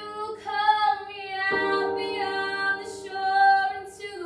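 Women singing a worship song together over sustained digital keyboard chords, with a new chord struck about a second and a half in.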